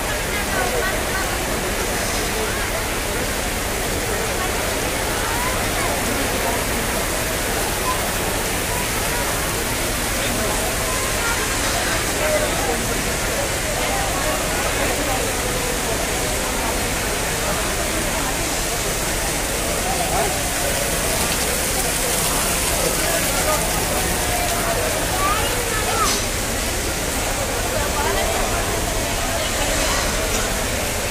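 Heavy rain pouring steadily as a dense hiss, with people's voices chattering under it.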